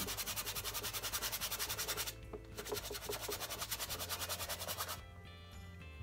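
A size five flat brush rapidly stippling and scrubbing oil paint onto canvas, as a fast, even series of short dabs at roughly ten a second. There is a brief pause about two seconds in, and the dabbing stops about five seconds in.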